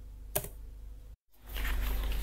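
A single click of a computer keyboard key over faint background hiss. A moment later the sound drops out completely, then a louder steady low hum and hiss comes in.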